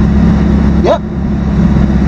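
Alfa Romeo 4C's turbocharged 1.75-litre four-cylinder engine running at steady revs while the car is driven on track.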